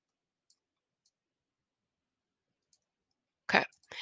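Near silence with three faint, sharp clicks of a computer mouse, spread over the first three seconds.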